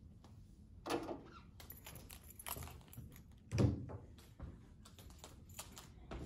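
Handling noises: scattered clicks and taps, with a dull thump about three and a half seconds in.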